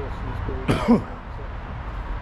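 A man coughs once, a short cough that clears his throat, just under a second in.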